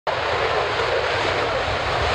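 Military fast jet taking off, its engines at full power making a loud, steady rushing noise.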